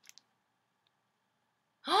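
Near silence, with two faint short clicks just after the start; at the very end a voice gives a brief exclaimed 'oh'.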